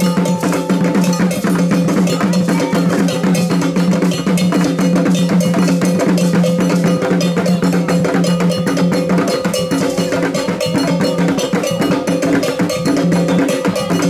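Traditional Ghanaian drum ensemble of hand drums playing a fast, steady dance rhythm, with a metal bell ringing over the drums.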